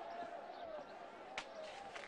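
A single sharp knock about one and a half seconds in, over faint, distant-sounding voices.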